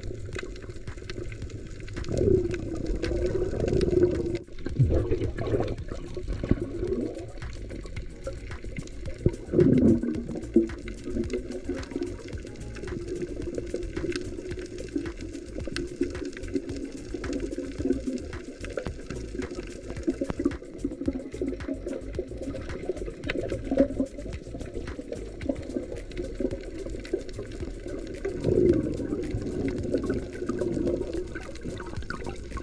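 Muffled underwater sound heard through a submerged camera, with gurgling air bubbles rising from a freediver. The bubbling swells louder a few times: about two seconds in, again around ten seconds, and near the end.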